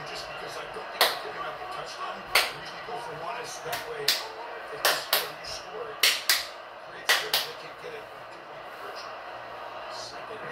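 Faint television sports commentary in the background, cut by about nine sharp slaps at irregular intervals, some in quick pairs.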